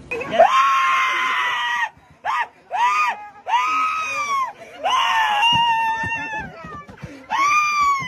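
A man screaming in a string of high-pitched cries, each rising and then falling in pitch. The first is the longest, about a second and a half, and shorter ones follow with brief gaps.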